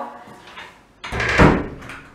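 A wooden front door being shut about a second in, closing with a sudden, solid thud.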